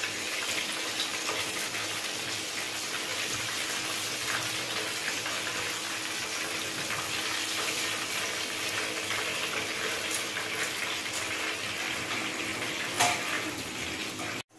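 Breaded chicken strips deep-frying in hot oil in a pan: a steady, dense sizzle and crackle, with one short click near the end.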